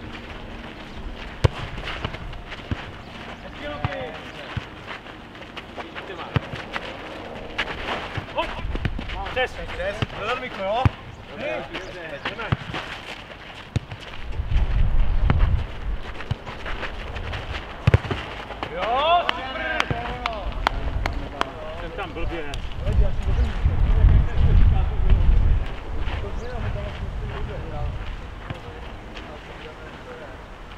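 Futnet (nohejbal) ball being kicked and headed back and forth over the net: scattered sharp, short thuds of foot and head on the ball, with shouted calls from the players. A low rumble comes in twice, about halfway through and again near 22–26 seconds.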